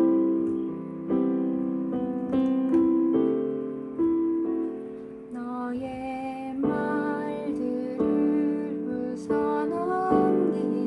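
Piano accompaniment played with both hands in G major: sustained chords restruck about once a second, with higher right-hand notes joining about halfway through.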